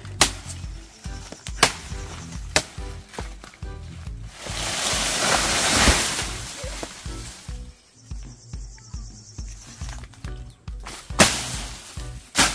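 Machete strikes chopping into a plantain stalk, then a long rustling crash as the plant and its dry leaves fall, about four seconds in. Two more sharp machete chops come near the end. Background music with a steady low beat plays underneath.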